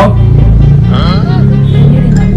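A loud, deep, steady rumble, with a short spoken phrase from a person about halfway through.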